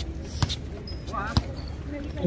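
A basketball being dribbled on an outdoor hard court: two sharp bounces about a second apart.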